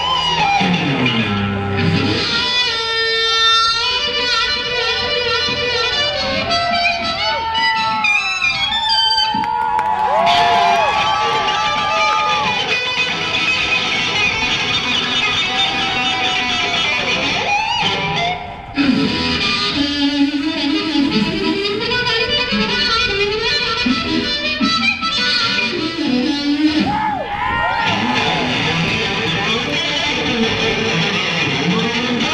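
Live blues band playing, led by an electric guitar solo full of bent notes and quick trills over bass guitar.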